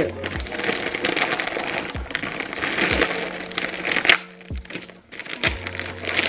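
Plastic poly mailer bag crinkling and rustling as it is handled and pulled open, with one sharp crack about four seconds in.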